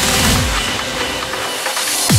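Uplifting trance track in a short break: the rolling bassline cuts out about half a second in, leaving held synth notes over a hissing noise sweep with the high end muffled.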